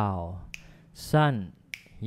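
Finger snaps keeping a steady beat: two sharp snaps a little over a second apart, between a man's spoken syllables.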